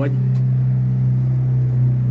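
An engine running with a steady, unchanging low hum.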